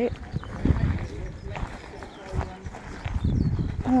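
Footsteps on gravel and ground in an uneven walking rhythm, with other people's voices talking in the background.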